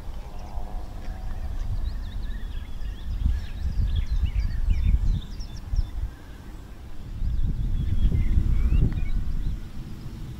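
Wind buffeting the microphone in irregular gusts, with small birds chirping faintly in the background.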